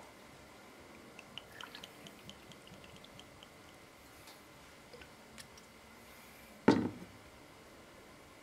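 Homemade liqueur poured from a glass bottle into a small shot glass: a faint run of small trickling ticks and glugs. Near the end the glass bottle is set down on the countertop with one solid knock.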